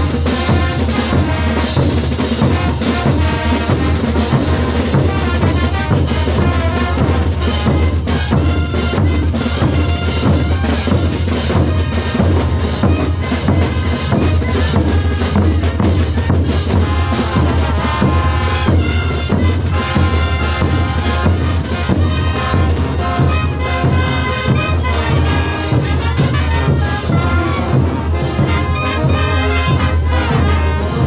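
A large marching brass band playing loudly and without a break: big bass drums and snare drums beat under trumpets, trombones, saxophones and sousaphones.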